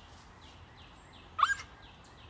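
Small bird chirping repeatedly in the background, short falling notes about three a second. About one and a half seconds in there is a single short, loud rising cry.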